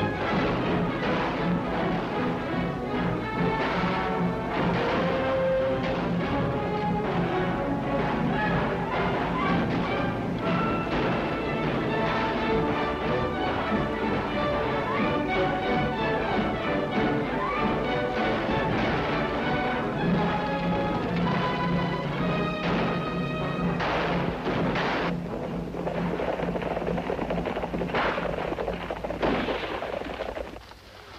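Orchestral film score playing, with several sudden bangs mixed in, the most distinct ones toward the end.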